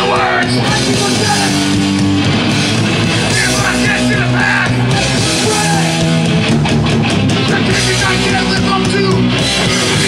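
Hardcore punk band playing live and loud: distorted electric guitars, bass and drums, with a vocalist singing into a microphone.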